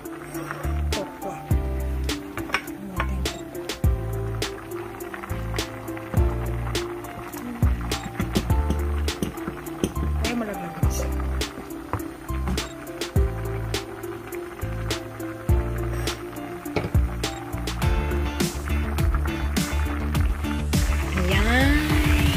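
Background music with a beat and a bass line that moves from note to note.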